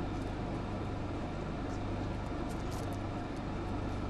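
Steady din of a large outdoor crowd over a low hum, with a few brief high sounds a little past halfway.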